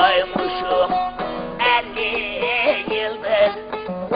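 Turkish aşık folk music: a long-necked bağlama (saz) plucked under a man singing a wavering, heavily ornamented melody.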